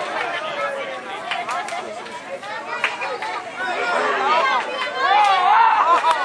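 Several voices shouting and calling over one another, the chatter of players and onlookers at an outdoor football match, with a few short knocks mixed in. It grows louder in the second half.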